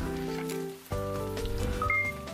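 Short TV news segment-intro jingle: held synthesized chords that shift to a new chord about a second in, with a brief high note near the end.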